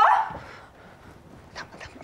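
A single short, loud bark-like cry right at the start that dies away within a moment, followed by low background sound.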